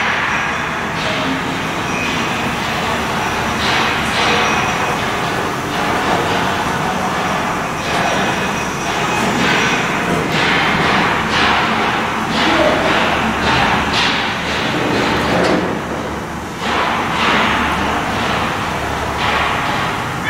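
Footsteps and knocks on the steel floor and grating of a dredger's engine room, many short thuds over a steady mechanical hum.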